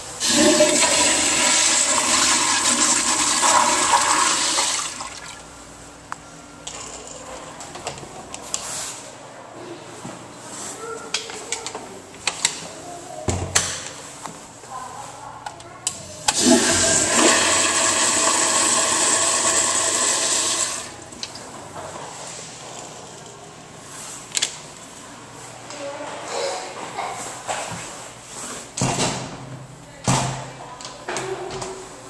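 Commercial flush-valve toilet flushing twice: a loud rush of water lasting about five seconds right at the start, then quieter trickling, and a second equally loud flush about sixteen seconds in.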